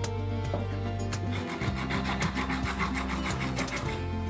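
Hand wire brush scrubbing a water-soaked coconut shell in quick back-and-forth strokes, several a second, starting about a second and a half in, stripping the softened husk fibres off the shell.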